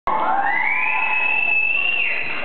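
Audience cheering, with a high-pitched whoop that rises over about the first second and then holds steady.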